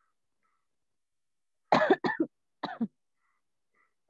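A person coughing: a quick run of coughs a little under two seconds in, then a shorter bout just after.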